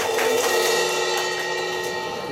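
Live rock band ending a short flourish: a hit on the downbeat, then a held full-band chord with a crashed cymbal ringing over it, slowly fading.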